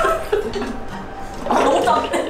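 Voices of people reacting to a taste, with laughter and throaty vocal sounds, over background music.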